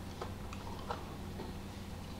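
A few faint, irregular clicks from plastic Blu-ray cases being handled, over a low steady room hum.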